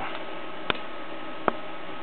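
Two short, sharp clicks about a second apart over a steady background hiss.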